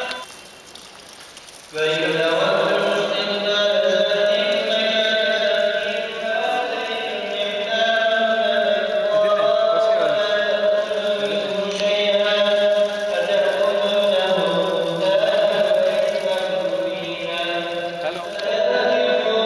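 Chanting with long held notes, starting abruptly about two seconds in and running on at a steady level.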